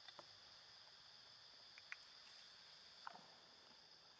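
Near silence with a faint, steady, high insect drone and a few soft clicks.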